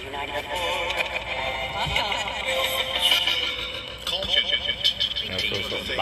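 Handheld ghost-box device playing choppy, broken fragments of voice and music through its speaker, cut up by frequent short clicks as it jumps from one snippet to the next.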